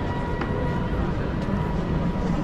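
Busy pedestrian-square ambience: a steady low rumble of crowd and footsteps with faint distant voices, over which a thin steady high tone is held, and one short click about half a second in.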